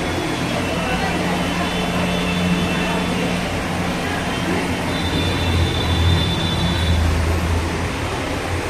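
Steady background din with a low droning hum that grows stronger in the second half.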